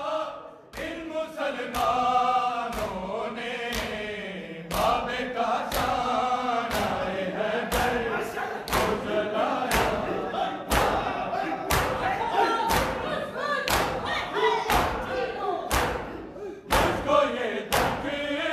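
Group of men chanting a noha in unison while slapping their bare chests with open hands (matam), the slaps landing together in a steady beat of about three every two seconds. The chanting drops out briefly about half a second in, and the slaps carry on.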